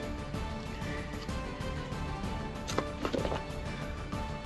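Background music with steady sustained tones. About three seconds in there is a sharp click, followed by a brief cluster of knocks.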